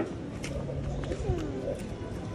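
A voice making a few short wordless sounds that slide up and down in pitch, over steady low background noise. A sharp click comes right at the start.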